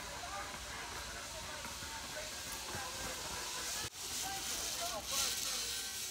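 Zip line trolley pulleys running along a steel cable with a steady hiss, faint voices behind it, and a brief break about four seconds in.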